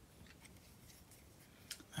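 Near silence: room tone with a few faint ticks from a metal replica lightsaber hilt being handled.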